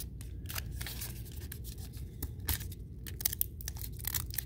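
Crinkling and crackling of a foil baseball card pack as it is picked out of the box and handled, with short, irregular crackles throughout; near the end the top seam of the wrapper starts to be pulled open.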